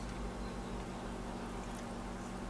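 Faint steady background hum and hiss of room tone, with a couple of faint ticks near the end.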